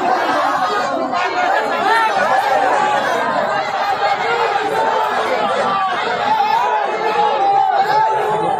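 A large crowd of people all talking at once: a loud, continuous hubbub of many overlapping voices in which no single speaker stands out.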